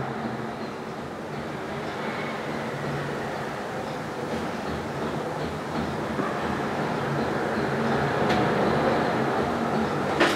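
Steady background noise with a faint low hum, swelling slightly toward the end, and one short click about eight seconds in.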